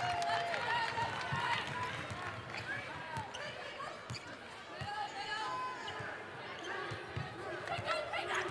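A basketball being dribbled on a hardwood court: uneven low bounces under a background of arena crowd and players' voices.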